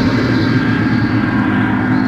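Live progressive rock concert music: a dense, noisy sustained keyboard sound with steady held tones underneath.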